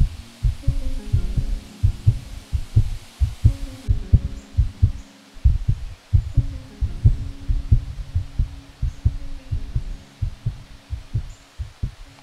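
Recorded human heartbeat sound effect: a steady run of low thumping double beats over a faint low hum.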